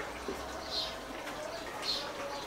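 A man sipping beer from a glass: two soft, short slurping sounds about a second apart, over a faint steady hum.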